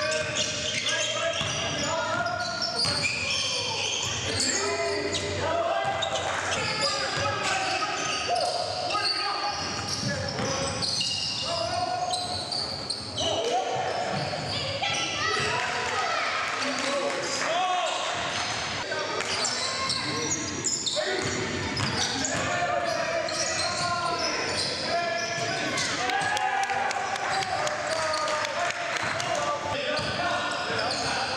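A basketball being dribbled on a hardwood gym floor during live play, with players' voices and calls echoing around the large gym.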